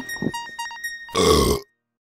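Closing music of plucked-string notes thins out. A little after a second in, a loud noisy burst about half a second long ends abruptly.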